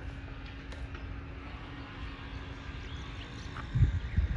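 Steady outdoor background rumble with a faint steady hum through most of it, and a couple of low thumps near the end.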